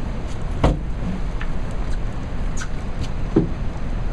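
Steady rumble of wind on the microphone and river current moving past the boat, with two short knocks, one under a second in and one near the end.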